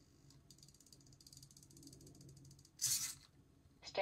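Hobby servos folding a 3D-printed shoulder-mounted arm down to rest. A faint, fine-grained gear-motor buzz runs for about two and a half seconds, then a short loud burst of hiss-like noise comes near the end.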